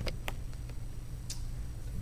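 A few soft, isolated clicks over a low, steady hum.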